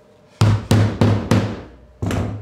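Mallet tapping a PVC-pipe spacer down into a hole in a CNC spoilboard: four quick knocks about a third of a second apart, starting about half a second in, each with a low thud that rings through the table.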